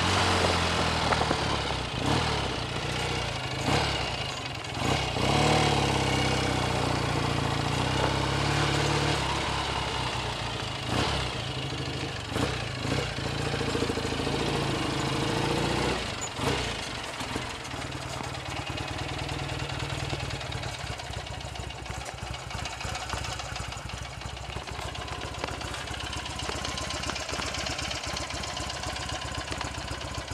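BSA A65 650 cc parallel-twin motorcycle engine, freshly rebuilt. It runs with the revs rising and falling as the bike rides slowly and pulls up, then about halfway through it settles to a steady idle.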